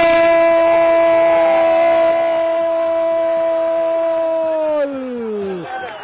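A football commentator's drawn-out goal shout: one long call held at a steady pitch for about five seconds, then sliding down and stopping near the end.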